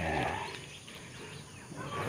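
Quiet outdoor background with a faint animal call near the start.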